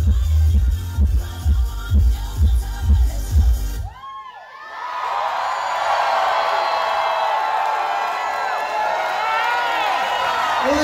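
A dance-pop track with a heavy bass beat plays over a club sound system and cuts off about four seconds in. A crowd then cheers, screams and whoops loudly to the end.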